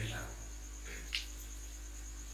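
Crickets chirping as a steady, high, pulsing trill over a low steady hum. A brief sharp sound comes about a second in.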